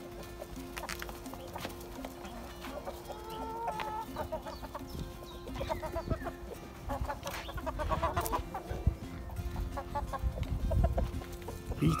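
A flock of chickens clucking and calling as they crowd in to feed, the calls thickest in the second half.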